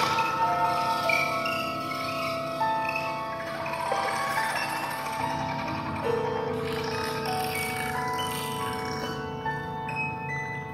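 Contemporary chamber music for flute, piano and electronic tape: many held tones overlap, each entering one after another, and one steady lower tone is held from about six seconds in.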